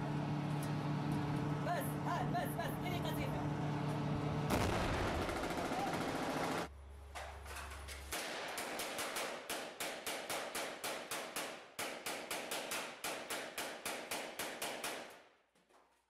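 Rapid rifle fire from inside a room, shot after shot at about four a second for several seconds, then stopping. Before the shooting, a steady low hum with voices.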